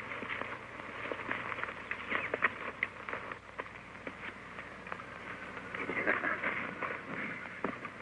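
Footsteps crunching and scuffing on loose rock and gravel as two men scramble up a stony slope, heard as scattered small irregular clicks over a steady hiss.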